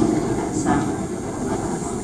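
Steady room noise of a reception hall during a pause in a speech, with a faint short sound about half a second in.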